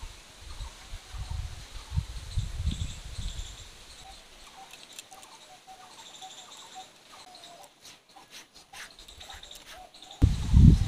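A silicone pastry brush dabbing and spreading oil-and-flour paste over a thin sheet of dough in a steel plate. There are low handling thumps in the first few seconds, then soft scattered clicks, with faint bird chirps in the background.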